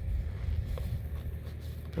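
A steady low rumble, with a few faint clicks as a plastic quick-coupler valve is screwed by hand into a threaded polyethylene tee.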